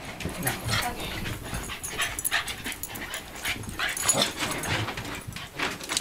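West Highland white terriers whining and yipping in excitement as they wait to greet someone, among irregular knocks and scuffles.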